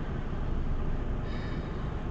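Steady low rumble of a car idling at a red light, with traffic crossing the intersection ahead. A faint brief hiss comes a little past halfway.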